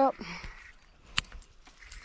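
A single sharp click about a second in, over a faint low background rumble.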